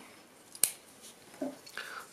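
One sharp metallic click about half a second in, from the open Bestech Predator titanium-framed folding knife being handled on the wooden tabletop, with a smaller tick just before it.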